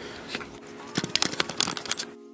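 Rustling and crackling handling noise, with a quick run of sharp clicks through the second half, over a faint steady hum.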